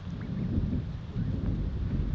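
Wind buffeting the camera microphone, an uneven low rumble.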